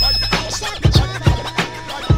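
A 1990s hip hop beat with a steady bass line and kick drum, with turntable scratching cut over it in the gap between rapped lines.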